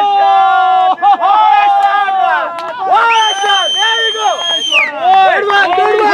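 Several people shouting and cheering loudly over one another, cheering a cricket shot. About three seconds in, a long high-pitched whoop is held for nearly two seconds.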